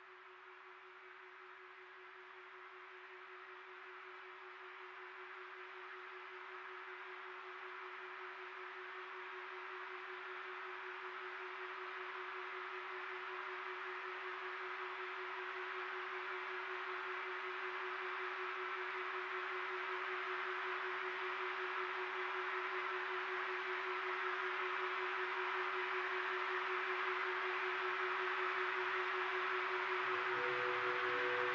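Ambient electronic-style music fading in: a single steady held tone with a slight waver, under a wash of hiss-like noise that slowly grows louder.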